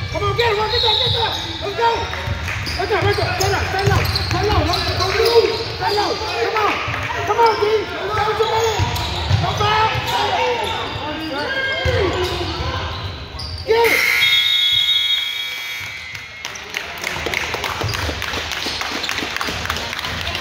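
A basketball bouncing on a hardwood gym floor amid shouting voices, echoing in a large hall. About two-thirds of the way through, a steady electronic scoreboard horn sounds for about two seconds, marking the end of the quarter.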